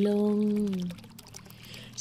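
A woman's calm, slow voice holding out the last word of a sleep affirmation, falling slightly in pitch, then about a second of pause with only a faint steady background hum.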